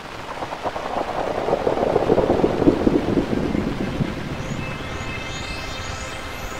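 Peugeot 2008 crossover driving past on a gravel track, its tyres crunching over the loose stones, loudest about two to three seconds in and then fading. Music begins faintly near the end.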